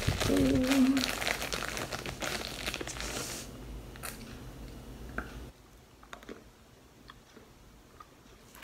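A bite of unbaked Mavu edible clay being crunched and chewed, with dense gritty crackling for about the first three seconds that then dies down to faint, soft chewing.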